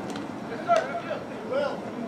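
Voices of players and spectators calling out and chattering at a distance, with a sharp click or knock a little under a second in.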